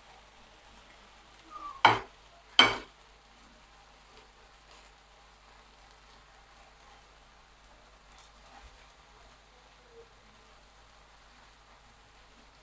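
Thin-sliced beef frying in a non-stick pan with a faint, steady sizzle while a silicone spatula stirs it. Two sharp knocks come close together about two seconds in.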